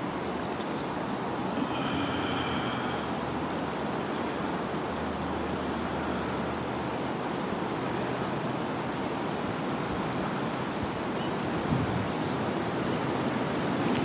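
Steady rushing wind noise in bare woods and on the microphone, with no breaks. A few faint high-pitched tones come and go over it, once near the start and twice more later.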